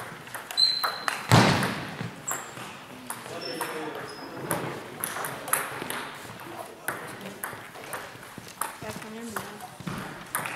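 Table tennis rally: the celluloid ball clicks sharply and repeatedly off the paddles and the table. A loud rush of noise comes about a second and a half in.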